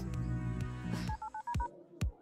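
Background music, then about a second in a quick run of about five short touch-tone beeps from a phone keypad being dialed, after which the music cuts out.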